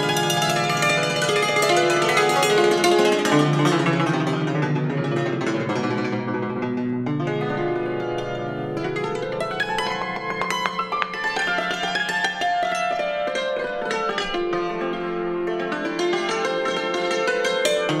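Concert cimbalom played solo with two hammers: quick runs of struck-string notes ringing into each other. The sound turns softer and darker in the middle, then climbing runs lead it back up toward the end.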